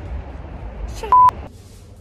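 A short, loud, steady beep at one pitch, about a second in, laid over a spoken swear word to censor it, against a low background rumble.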